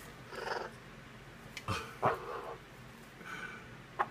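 Yellow-naped Amazon parrot bathing, making a few short, separate bursts of sound with quiet gaps between, including a sharper click about two seconds in.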